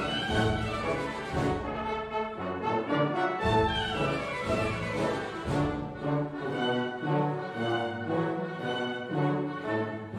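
Symphony orchestra playing live, with brass such as horns and trombones prominent over the strings.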